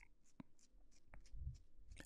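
Near silence: faint room tone with a few soft clicks.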